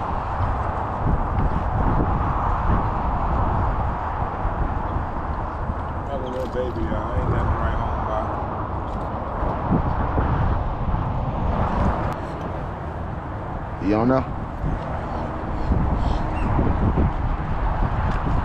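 Wind rumbling steadily on the microphone over open water, with a short pitched call about six seconds in and a louder, rising call around fourteen seconds in.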